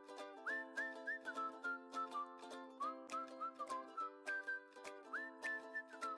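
Background music: a whistled tune, sliding up into its notes, over steady plucked chords with an even beat.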